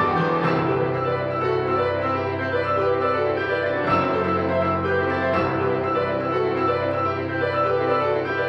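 An ensemble of Yamaha grand pianos playing together: dense, rapidly repeated notes over held bass notes that shift every few seconds.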